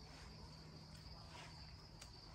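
Crickets trilling faintly and steadily in the background, a thin high-pitched insect drone with no other sound over it.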